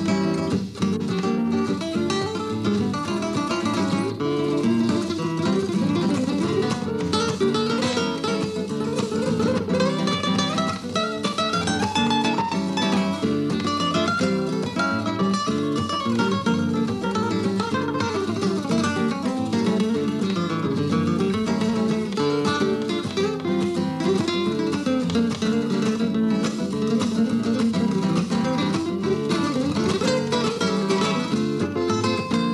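Two nylon-string flamenco guitars with cypress backs and sides and spruce tops playing a Latin-flavoured duet: plucked melody over chords, with a long rising run of single notes around the middle. The tone is bright, typical of flamenco guitars.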